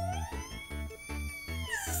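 Background music with a pulsing bass beat, over one long high gliding tone that rises, holds, and falls away near the end.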